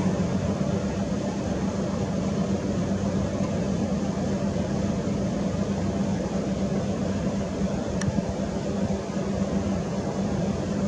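A steady low machine hum over even noise, with a single faint click about eight seconds in.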